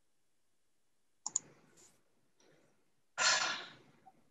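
Two quick computer mouse clicks about a second in, followed by faint handling noise. Near the end comes a short, louder breathy rush of noise into the microphone that fades over under a second.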